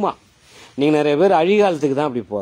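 A man's voice speaking in a monologue, with a short pause of about half a second between two stretches of speech.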